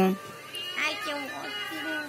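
A high-pitched, cartoon-like voice speaking and singing in drawn-out notes, played from a video on a smartphone.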